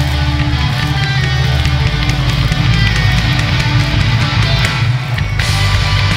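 A rock band playing live and loud: heavy electric guitar and a drum kit, with a fresh crash of cymbals coming in about five seconds in.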